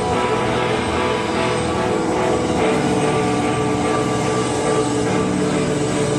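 Live rock band's distorted electric guitars and bass through amplifiers, holding loud, steady droning chords with little rhythm.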